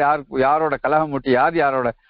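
Speech: a man talking continuously, in short phrases.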